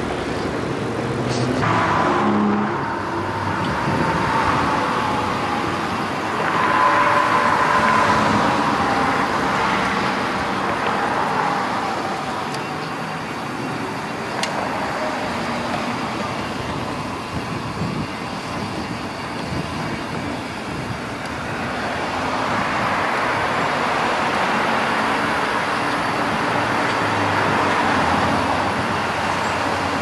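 Road traffic noise: cars passing on a city street, the sound swelling and fading as vehicles go by.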